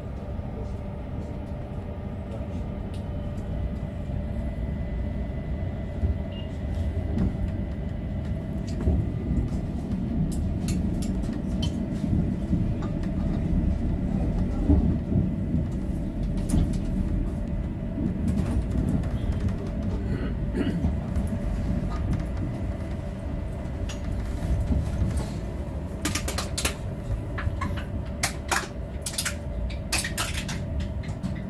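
Electric train heard from the driver's cab while running: a steady low rumble of wheels on rail with a steady motor hum, and a run of sharp clicks over the last few seconds.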